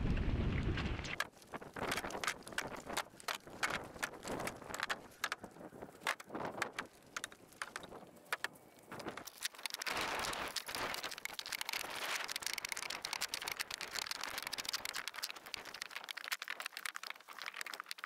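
Split firewood being loaded and stacked by hand in a pickup truck bed: irregular knocks and clunks of wood on wood and on the bed, over a steady hiss of rain.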